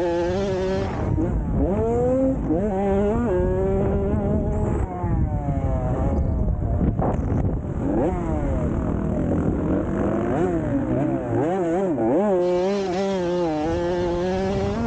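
Dirt bike engine revving hard, its pitch climbing and then dropping back over and over as the rider works the throttle and gears through the turns and straights of a motocross track. Around the middle the engine note goes rougher and less clear for a couple of seconds before it picks up again.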